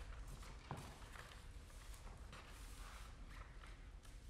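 Near silence in a hall, broken by faint paper rustling and light taps as a sheet-music page is handled, with one sharper click about three quarters of a second in.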